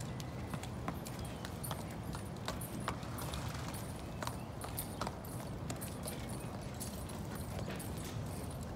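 Hooves of a walking thoroughbred racehorse striking pavement: a slow, uneven clip-clop of single hoof strikes, about one every second or less, over a steady low rumble of outdoor background.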